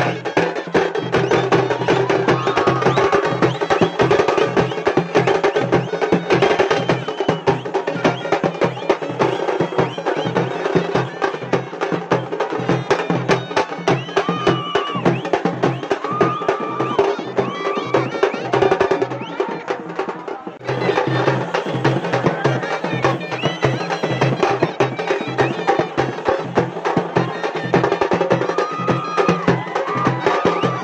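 A band of large stick-played procession drums beating a fast, dense rhythm without a break. The level dips briefly about two-thirds of the way through.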